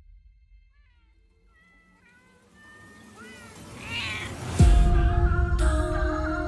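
Several cats meowing, faint at first, then more and louder calls overlapping. About four and a half seconds in, a loud low hit sets off dark trailer music with sustained tones.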